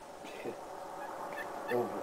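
Turkeys gobbling faintly, with a word of speech starting near the end.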